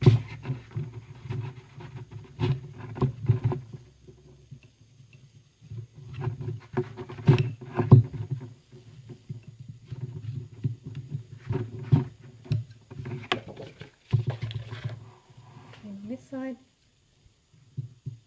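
Metal palette knife scraping along the dried hot-glue edge of a watercolour paper pad, in irregular strokes with small clicks, mixed with the rustle of the pad being handled. There are two quieter pauses, one about four seconds in and one near the end.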